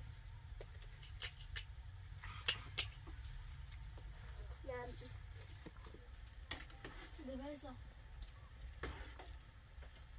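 Quiet room with a steady low hum, a few sharp light clicks and knocks, the loudest about two and a half seconds in, and a child's voice speaking briefly twice, near the middle and near the end.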